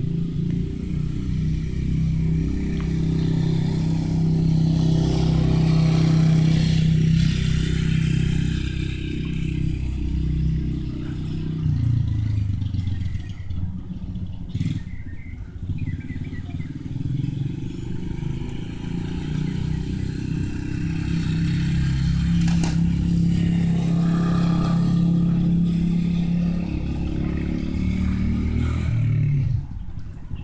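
Motorbike engine running at a steady pitch: loud for the first ten seconds or so, dropping away about twelve seconds in, then growing louder again and cutting back sharply just before the end, as it comes near and goes off again.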